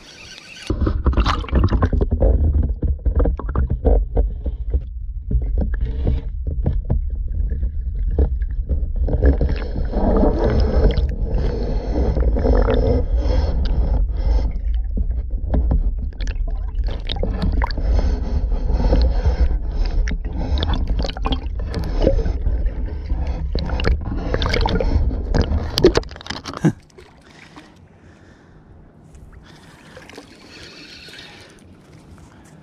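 Muffled underwater rumble and sloshing picked up by a camera held under the surface of the pond, with scattered knocks and scrapes against the camera's housing. The rumble drops away sharply about four seconds before the end.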